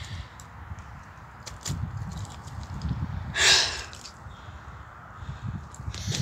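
A person's loud breath out, about three and a half seconds in, over a steady low rumble of wind and handling noise on a handheld microphone.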